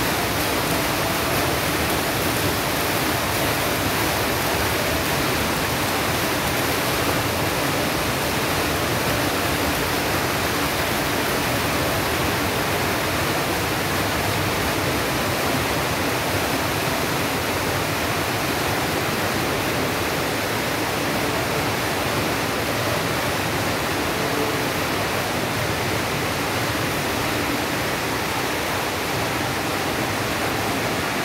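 Steady, even rushing of flowing water from an indoor water channel, unchanging throughout.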